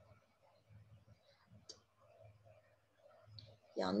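Faint clicks and light handling noise from someone working a computer, with one sharper click about a second and a half in. A woman's voice starts at the very end.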